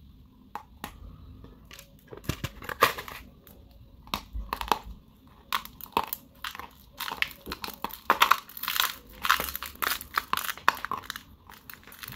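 Close-up crunching of dry clay chunks being bitten and chewed: a run of sharp, crisp crunches that begins about two seconds in and is thickest in the second half.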